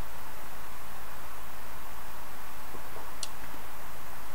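Steady, even background hiss with no distinct event, apart from one short faint tick about three seconds in.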